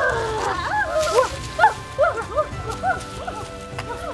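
Background music with held tones, overlaid with a rapid series of short animal yelps, each rising and then falling in pitch.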